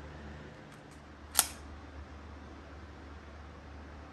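A single sharp click about a second and a half in, over a steady low hum.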